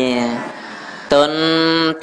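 A man's voice intoning a Buddhist sermon in chant, drawing out long held notes. One note dies away shortly after the start, and after a short lull a new held note begins about a second in.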